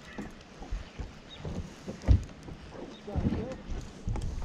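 Small waves slapping against a boat hull in irregular low thumps, with wind noise on the microphone. A faint voice is heard briefly about three seconds in.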